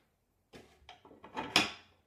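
Assembly handling noise from a wooden IKEA footstool frame and its fittings: a few light knocks, then a louder short scrape about one and a half seconds in.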